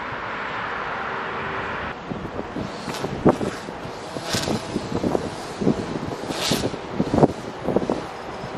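Steady background hum of distant traffic for about two seconds. After that, irregular gusts of wind buffet the microphone, with a few sharper hissing blasts.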